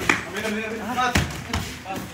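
A basketball shot hits the hoop, then the ball bounces hard on the concrete court about a second in, with two sharp knocks in all.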